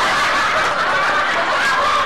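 Steady laughter from several people, dense and continuous without pauses.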